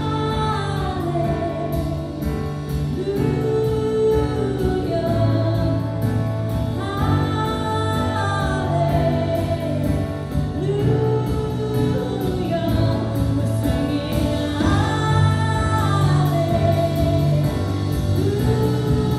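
Live worship band playing: a woman sings long phrases that rise and fall, about one every four seconds, over acoustic and electric guitars, bass and drums.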